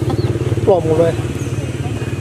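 An engine running with a steady low drone throughout, and a person's voice speaking briefly about a second in.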